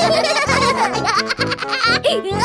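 Children's cartoon background music with a high-pitched cartoon voice giggling over it, its pitch sliding down at the start.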